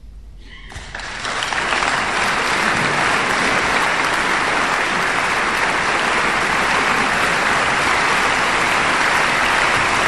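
Audience applause starting about a second in, quickly building to dense, steady clapping from a large crowd in a concert hall.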